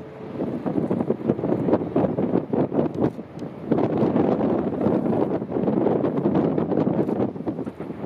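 Wind buffeting the microphone over a rushing wash of ice and water falling beneath a glacier ice arch into the lake, with many short cracks and splashes and a brief lull about three seconds in.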